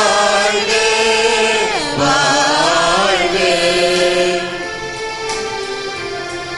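A hymn sung with accompaniment, long held notes sliding between pitches; the singing is loudest for about the first four seconds, then quieter held notes carry on.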